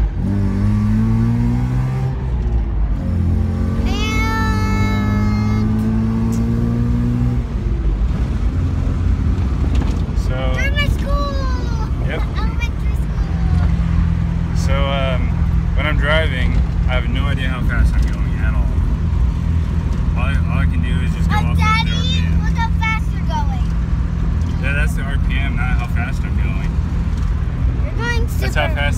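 Mazda RX-7's carbureted rotary engine heard from inside the cabin, accelerating with its pitch rising twice through a gear change, then holding steady at a cruise. The owner says it hesitates and loses power when he gets back on the gas, which he reads as a Holley carburetor that probably just needs rebuilding.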